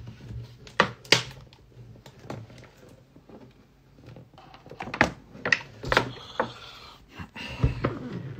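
Knocks and thumps from a phone being handled and moved, several sharp ones about a second in and again in the second half, with a hiss of rustling near the end.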